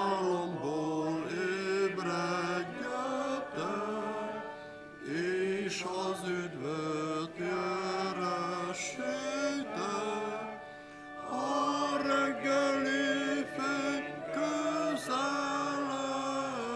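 A congregation singing a hymn with piano accompaniment, in sung phrases with short pauses between them.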